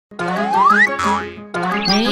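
Cartoon channel intro jingle: bouncy music with a rising whistle glide, then a falling cartoon sound effect about a second in. After a short dip the music starts again with another rising glide near the end.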